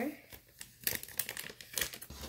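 Packaging wrapper crinkling in the hands in a few short bursts, the loudest about a second in and near the end.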